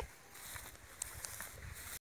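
Faint outdoor background: a low rumble with a few soft clicks about a second in.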